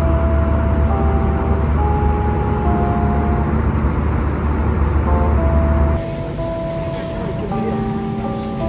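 Steady low rumble of an airliner cabin in flight, with soft background music over it. The rumble cuts off about six seconds in, leaving the music.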